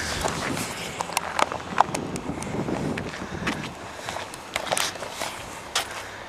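Footsteps on pavement with rustling from the handheld camera being carried along: a string of irregular taps and scuffs.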